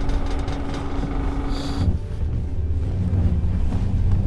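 Film soundtrack: dramatic score over a deep, continuous rumble of dust-storm sound effects. A held low tone stops a little under two seconds in, and the rumble grows heavier after it.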